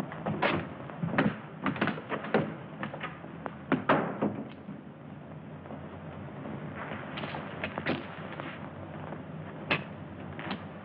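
A door opening and footsteps on a wooden step: a run of uneven knocks and thuds over the first four seconds, a few more around seven to eight seconds in, and one last knock near the end.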